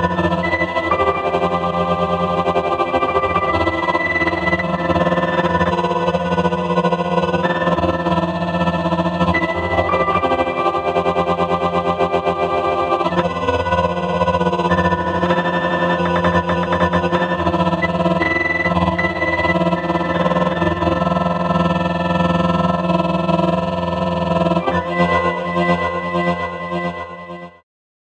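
Eurorack granular synthesizer playing a sustained, layered drone of held tones, its upper notes changing every second or two as two light sensors, lit by a tilted flashlight, shift the grain size and sample position. The sound cuts off abruptly just before the end.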